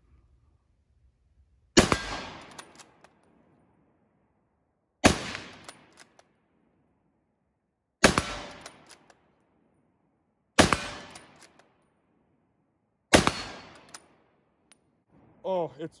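Five rifle shots from a Model 1896 Swedish Mauser bolt-action rifle in 6.5×55 Swede, about three seconds apart. Each shot is a sharp crack that trails off in about a second of echo.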